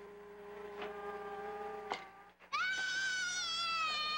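A young child's long, high-pitched squeal, about two seconds, starting just past halfway and the loudest sound. Before it, a steady humming tone and a few sharp knocks of plastic toy blocks.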